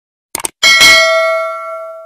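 Subscribe-button animation sound effect: a quick cluster of mouse clicks, then a bell chime that strikes loudly and rings out, fading over about a second and a half.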